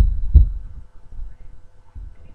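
Two dull, low thumps about half a second apart, the first the loudest, then faint low bumping of people moving about on the floor close to the microphone.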